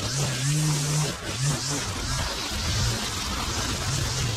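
String trimmer engine running at cutting revs with small changes in pitch, its spinning line slashing through long grass.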